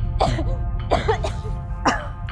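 A young woman coughing hard several times in quick succession, over background music. The coughing comes from smoke she breathed in.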